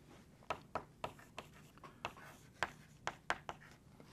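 Chalk writing on a blackboard: a quick series of short, faint taps and scrapes as a word is written.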